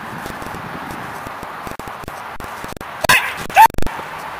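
A protection-trained dog barks loudly twice in quick succession about three seconds in, as it goes into bite work on the helper's sleeve.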